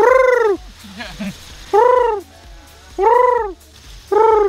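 Bird call blown at the mouth to call in doves: three loud notes, about a second and a half apart, each rising then falling in pitch.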